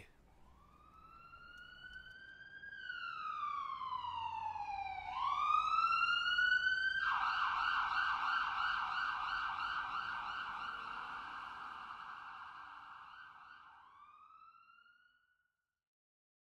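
Emergency-vehicle siren with a slow rising and falling wail that grows louder. About seven seconds in it switches to a rapid yelp, then fades away with one last rising wail.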